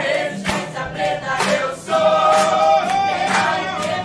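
A mixed group of young voices singing in chorus, holding long notes, to acoustic guitar accompaniment, with hand claps keeping the beat about twice a second.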